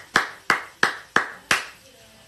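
A person clapping hands in a steady rhythm, about three claps a second; the clapping stops about one and a half seconds in.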